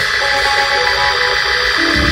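Live church band music: a keyboard holding steady sustained chords, with no bass or drums underneath.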